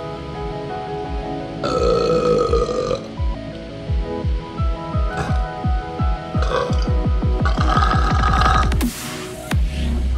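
A man burping loudly: one long burp about two seconds in and another near the end, each over a second long. Electronic background music with a pounding bass beat plays underneath.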